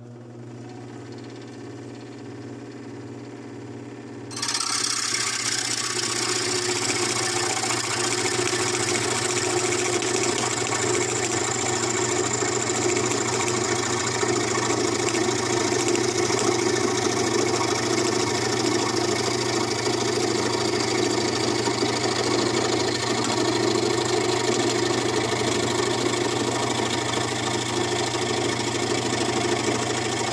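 Scroll saw running, first free with a steady hum, then about four seconds in its reciprocating blade bites into a 3/4-inch pine board and saws steadily along a straight line, a dense, rasping cut over the motor hum.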